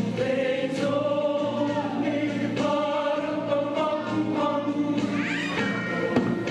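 A choir singing a Christmas cantata, holding long notes that change in steps.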